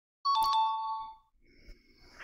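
A short electronic chime sound effect, two steady tones sounding together and fading after about a second: a quiz 'correct answer' cue.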